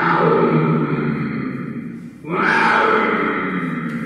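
A cartoon tiger's growl sound effect, twice, each about two seconds long, starting loud and fading away.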